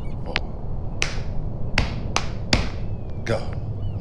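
A body-percussion rhythm of about six sharp hits: finger snaps and hand slaps, two of them deeper and heavier, from slapping the leg.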